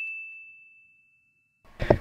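A single high bell-like ding sound effect, struck just before and ringing on as one steady tone that fades away over about a second and a half.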